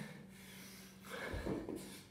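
A person dropping from standing into a burpee's plank: hands and feet landing on a rubber floor mat with a dull thud about a second and a half in, amid rustling and hard breathing.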